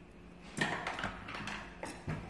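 A coloured pencil picked up and a sheet of paper shifted on a cloth-covered table: a short run of light knocks and rustles starting about half a second in.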